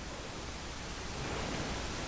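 Steady background hiss of room tone and microphone noise, with no distinct events.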